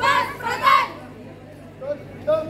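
Young drill-team voices shouting in unison: two loud, high-pitched yells in the first second, then a short call near the end.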